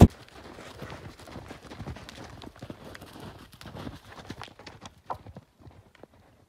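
Horses cantering through snow, their hooves landing in a quick, irregular run of soft thuds that thins out and stops near the end.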